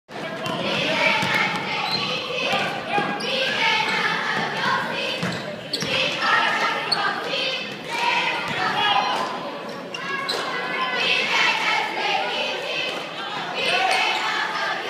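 A basketball being dribbled on a hardwood gym floor during a game, with short bounces among players and spectators calling out and talking, echoing in a large gym.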